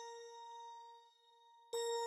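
Bell-like synth notes played back in the beat-making software. One note at a steady pitch rings and fades over about a second and a half, then a second, louder note of the same pitch strikes near the end.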